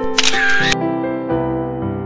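Gentle piano background music, with a short hissy sound effect about half a second long laid over it a fraction of a second in.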